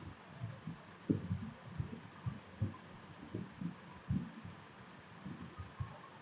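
Computer keyboard keystrokes picked up as dull, low knocks, about a dozen at irregular intervals.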